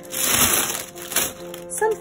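Paper and tissue rustling as the packing in a box is handled. It comes as a loud burst over about the first second, followed by a few softer crinkles, over quiet background music.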